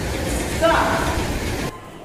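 Recorded sound of a running train, a steady noise that cuts off abruptly near the end, played to set the pupils' train moving and stopping. A short voice call rises over it about half a second in.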